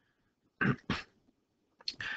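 A man coughing twice in quick succession, two short bursts about half a second in.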